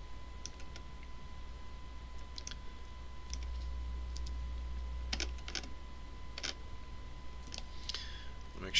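Scattered short clicks of computer keys and a mouse, some in quick pairs, over a steady low electrical hum.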